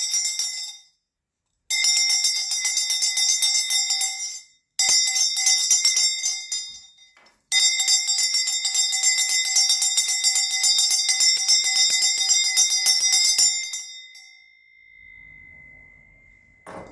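A hand bell rung rapidly in ritual fashion, its clapper striking many times a second in four bursts of shaking separated by short pauses. The last and longest burst lasts about six seconds, and the ringing then fades away.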